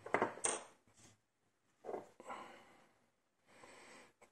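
Small metal parts of a lock cylinder clinking against each other and the tabletop as they are handled: a quick cluster of light clinks at the start, then a short scraping rub about two seconds in.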